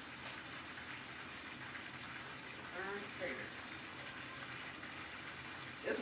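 Steady low hiss of food cooking in a hot kitchen, from roasted potatoes in a cast-iron skillet being stirred at the open oven.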